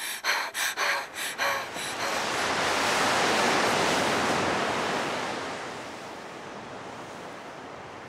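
A few quick, rhythmic gasping breaths, then the rush of a sea wave that swells to a peak about three seconds in and slowly washes away.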